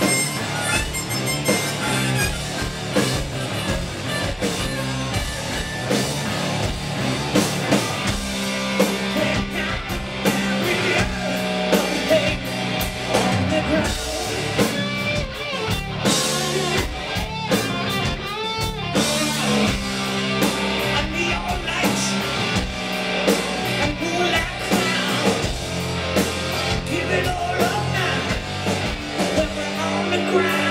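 Live rock band playing loudly: electric guitar through Marshall stacks, bass guitar and drum kit.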